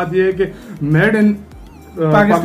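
A man speaking, then a short high call that rises and falls about a second in, followed by a faint thin wavering tone near the end.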